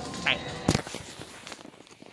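A woman's brief spoken "bye", then a single sharp click, followed by faint background noise.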